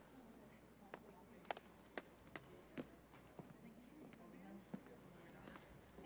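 Near silence: faint hall room tone with a handful of faint, sharp, irregular taps and a little distant murmur.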